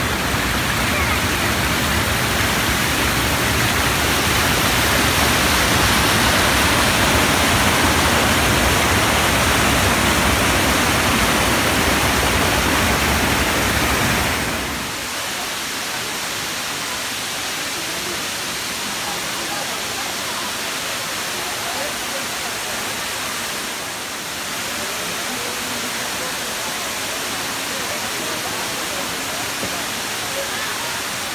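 Steady rush of the Dudhsagar waterfall, with faint human voices underneath. The rush is loud and deep at first, then about halfway through it drops suddenly to a quieter, thinner rush.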